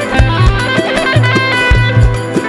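Live instrumental Turkish dance music (oyun havası): an amplified plucked-string lead playing a busy melody over a steady, driving drum and bass beat.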